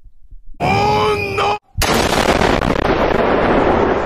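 A voice shouts for about a second, then a large explosion goes off with a sudden loud blast, and its rumbling noise runs on for nearly three seconds before fading.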